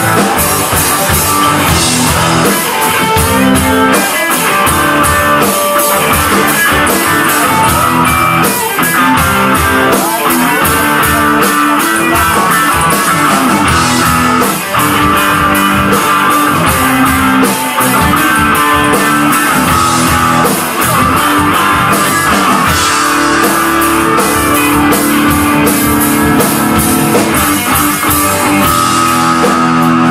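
Live southern rock band playing an instrumental passage with no vocals: several electric guitars over a drum kit, loud and continuous.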